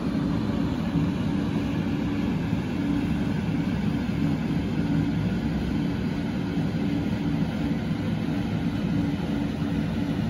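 A steady, low mechanical rumble with a faint hum running through it, even throughout with no clear rises, falls or clatter.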